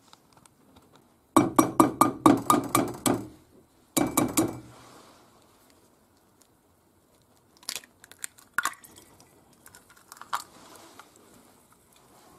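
A quick, even run of sharp clicks, then a few more, like a gas hob's spark igniter lighting a burner. Later come scattered light cracks and taps as an egg is broken open over a small frying pan.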